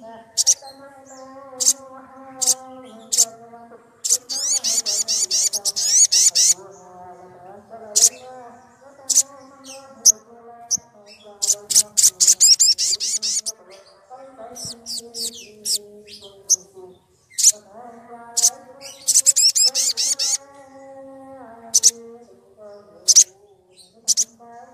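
Sunbird singing: a string of sharp, high single chirps broken by three fast, rattling trills, about four, eleven and nineteen seconds in, each lasting one to two seconds.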